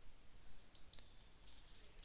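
A few faint computer mouse clicks, the clearest about a second in, over quiet room tone.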